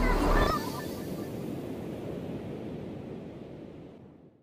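Background music cuts off about half a second in, leaving a steady rush of ocean surf that fades out gradually.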